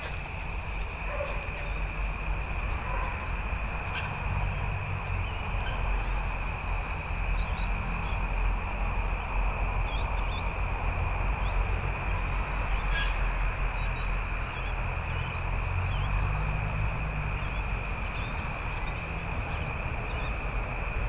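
Outdoor ambience: wind rumbling on the microphone, a constant thin high-pitched hum, and a few faint scattered bird chirps.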